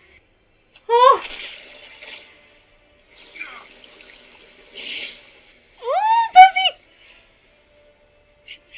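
High-pitched vocal cries: one sharp rising-and-falling cry about a second in, then a quick run of three near the six-second mark, with a soft rushing hiss between them.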